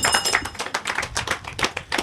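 An audience clapping: a dense, irregular run of claps that fills the pause in the speech.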